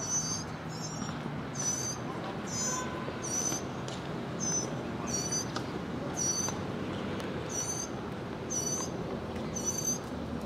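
A small bird calling over and over, a short high chirp roughly once a second, with a few faint tennis ball hits underneath.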